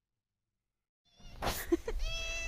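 Silence for about a second, then a long-haired domestic cat starts meowing in short calls, with a brief noise near the first call.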